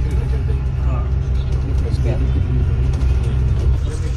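Steady low rumble of a double-decker bus's engine and road noise, heard from inside the passenger cabin.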